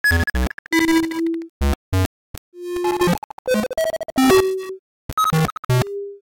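Algorithmic synthesizer music made of irregular, clashing notes, each triggered when a bouncing object hits a side: short pitched tones at many different pitches, a few held for about half a second, mixed with low bass notes and percussive clicks, with no steady beat.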